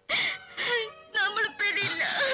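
A woman crying and wailing in three wavering, sobbing cries.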